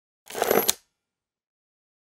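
Short bright sound effect of a TV channel's logo sting, lasting about half a second and ending in a sharp click.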